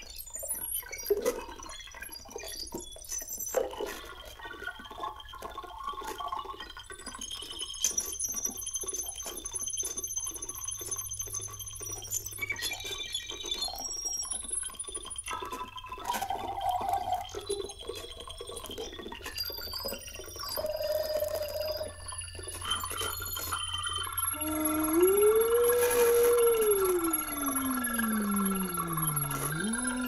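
Electronic synthesized sounds from a wearable instrument played with glove controllers and a mouthpiece: scattered blips, clicks and short held tones. From about 24 s a louder tone slides up, then glides steadily down and rises again near the end.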